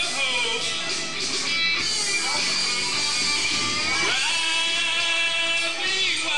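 Karaoke backing track of an upbeat country song playing an instrumental passage, with guitar to the fore.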